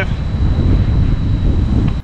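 Minn Kota Endura C2-30 electric trolling motor running at its top speed setting out of the water, propeller spinning in open air, heard as a loud, steady rushing noise.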